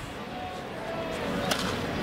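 One sharp crack of a wooden baseball bat fouling off a pitch, about one and a half seconds in, over the steady murmur of a ballpark crowd.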